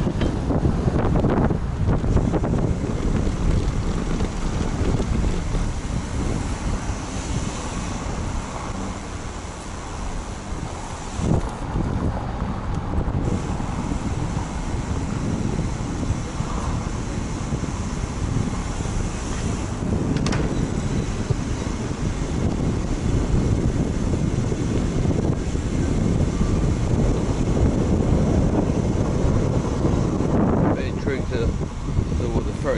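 Wind buffeting the microphone of a camera mounted on a moving bicycle, a steady low rumble, with a couple of brief knocks partway through.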